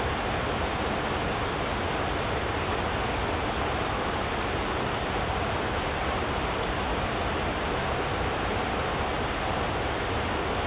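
A steady, even rushing noise with no bird calls and no other events in it.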